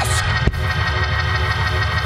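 Organ holding a sustained chord under the sermon, with a steady low bass beneath it; a single sharp thump about half a second in.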